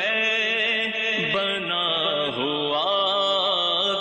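A man's voice singing a naat, a devotional Urdu poem in praise of the Prophet, in long held notes that waver and glide in pitch.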